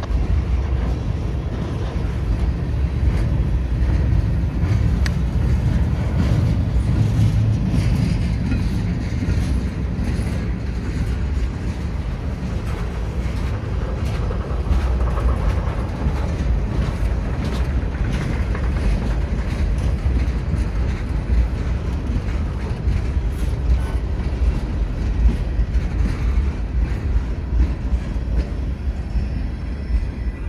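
Freight cars of a CSX mixed freight train rolling past: a steady low rumble of steel wheels on rail, with sharp clicks from wheels passing over rail joints, more frequent in the second half.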